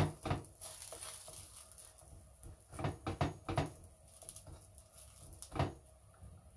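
Hands patting and pressing a folded square of msemen dough flat on a hot cast-iron griddle: soft slaps in short runs, a couple at the start, a quick run of four or five about three seconds in, and a last one near the end.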